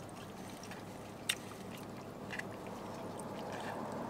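Low steady background noise inside a car cabin, with a sharp short click about a second in and a fainter one a second later, from eating with a fork out of a plastic takeout tray.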